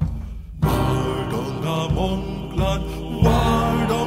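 Background music: a chant-like melody with gliding pitch over deep bass notes, cutting out for a moment and coming back in about half a second in.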